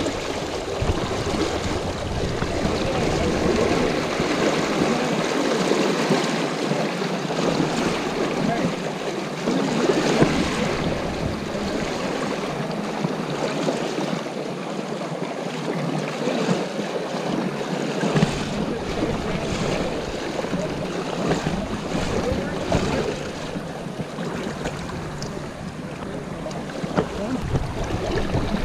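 Fast river current rushing and splashing steadily around the wading angler, with some wind buffeting the microphone.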